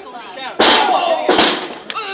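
A wrestler slammed onto the ring mat: two loud crashes of body on the boarded ring, the first about half a second in and a second, slightly quieter one under a second later.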